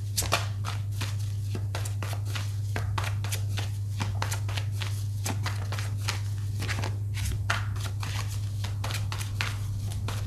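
A deck of tarot cards being shuffled by hand: a dense, irregular run of soft card clicks and riffles, over a steady low hum.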